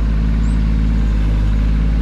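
A vehicle engine idling steadily nearby, a low, even hum and rumble.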